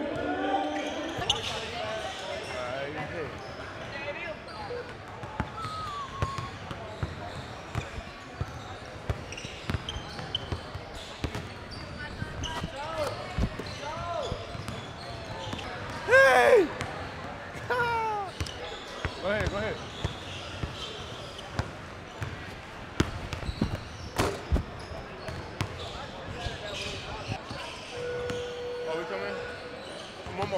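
Indoor basketball gym sound: a basketball bouncing on the hardwood court, with echoing background voices. Short sharp squeaks, typical of sneakers on the floor, come around the middle.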